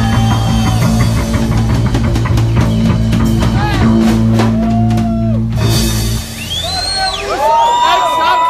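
Live rock band with electric guitar, bass, drums and singing, playing the end of a song; the music stops about six seconds in and voices shout and whoop.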